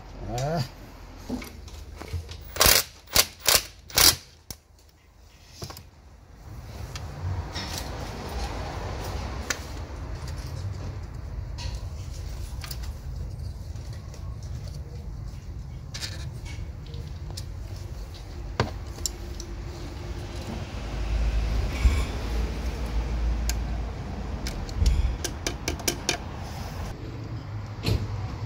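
A socket ratchet and small metal parts clicking and clinking as the fuel pressure regulator is bolted onto the fuel rail. There are several sharp clacks a few seconds in, then scattered lighter clicks, with a low rumble partway through.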